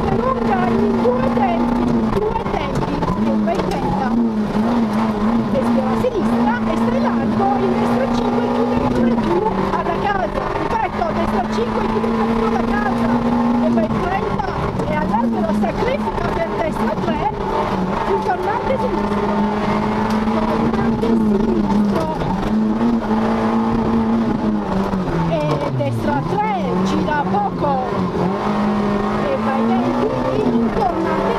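Peugeot 106 rally car's engine heard from inside the cockpit, running hard at a steady high pitch that dips briefly every few seconds as the driver lifts for gear changes and corners, with one deeper drop in revs near the end.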